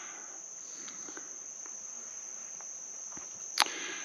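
Insects trilling steadily at one high pitch over quiet outdoor ambience, with a single sharp click about three and a half seconds in.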